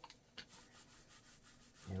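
Small microfiber paint roller being rolled over a painted plywood board, a faint soft rubbing, with a brief click about half a second in.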